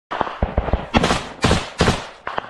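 Gunshots in quick succession: a few lighter cracks in the first second, then three louder shots about half a second apart, each trailing off briefly.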